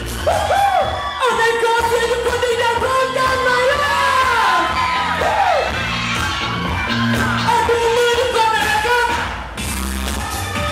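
Live pop song through a PA system: a man singing into a microphone over loud amplified backing music with a steady beat. The music dips briefly just before the end.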